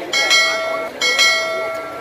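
A bell-like chime struck twice, about a second apart, each strike ringing on and fading away.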